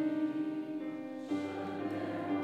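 A group of voices singing a hymn verse together, in held notes that step from one pitch to the next.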